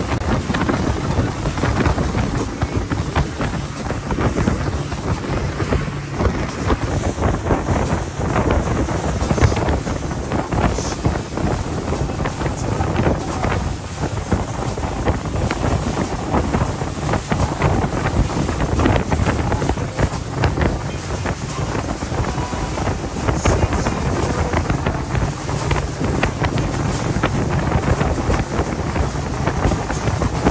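Wind buffeting the microphone aboard a Kevlacat 2800 power catamaran under way, over the steady rush of water along the hull and the low drone of its engines.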